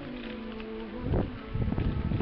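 A fly buzzing close to the microphone, its pitch wavering, with gusts of wind buffeting the microphone from about a second in.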